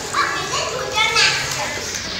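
Young children's voices calling out as they play in a swimming pool, two short high-pitched calls about a second apart, over a steady wash of water noise.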